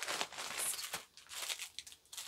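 Plastic packaging crinkling and rustling as it is handled, in irregular bursts.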